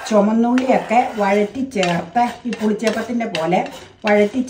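A woman talking while a wooden spatula stirs and scrapes dry grains roasting in a nonstick pan, with light rattling and scraping between her words.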